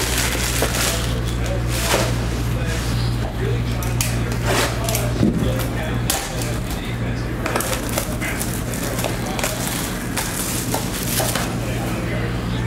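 Plastic shrink-wrap crinkling and tearing as it is pulled off a sealed trading-card box, in quick irregular crackles, over a steady low background hum.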